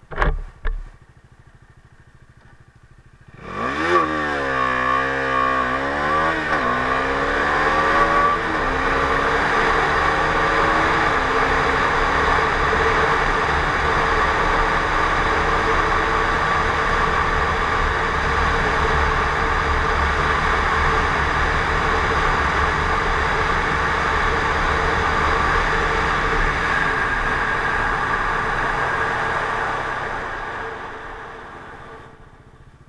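Two knocks near the start, then the Bajaj Dominar 250's single-cylinder engine launches hard from a standstill about three seconds in. Its pitch climbs through several quick upshifts, then it runs at high speed with heavy wind noise on the microphone, fading as the bike slows near the end.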